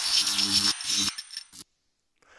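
Intro sound effect for an animated title card: a harsh, noisy burst with a thin high ringing tone and a low hum under it, breaking up and cutting off abruptly about a second and a half in.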